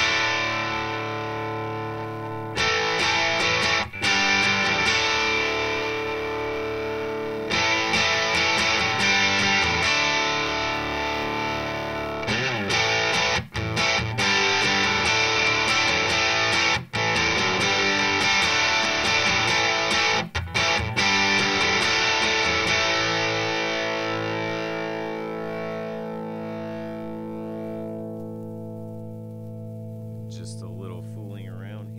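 Nash T-57 Telecaster played through a Skreddypedals Screw Driver Mini Deluxe overdrive pedal into a Morgan RCA35 amp: overdriven strummed chords with a few brief breaks between phrases. In the last several seconds a final chord is left to ring and slowly fade.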